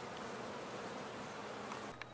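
Honey bees buzzing steadily around leftover comb, a faint even hum; these are the queenless remnants of a shaken-out laying-worker colony.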